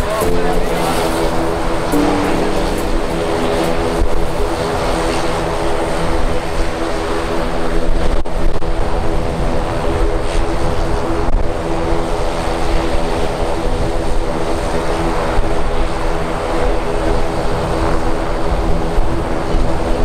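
ATR 42-500 turboprop's two Pratt & Whitney Canada PW127 engines running with their six-blade propellers turning: a steady drone of several even tones over a low rumble, as the airliner moves slowly on the ground.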